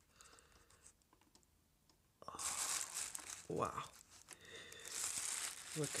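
Thin plastic trash bag crinkling and rustling as a heavy amplifier is handled inside it. The rustling starts suddenly about two seconds in, after a quiet start. There is a brief vocal sound partway through.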